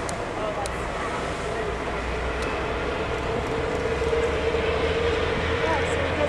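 Steady low rumble and hiss of open-air ambience at sea. A steady hum comes up about halfway through, and there are faint distant voices.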